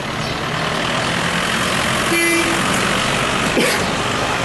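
Steady street traffic noise, with a brief vehicle horn toot about two seconds in.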